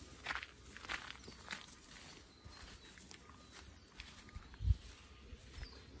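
Footsteps walking at an easy pace over a garden path and grass, with a single low thump just before the end.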